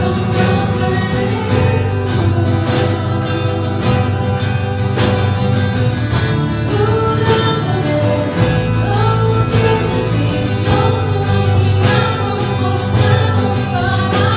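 Live worship band playing: a woman singing in Spanish over strummed acoustic guitar, electric guitar and a steady drum beat.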